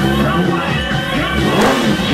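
Rock music soundtrack with an engine revving up over it, rising to its loudest about one and a half seconds in.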